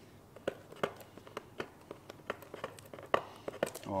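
Quiet, scattered clicks and crinkles of paper and masking tape being handled as a taped paper stencil is worked loose from the helmet shell.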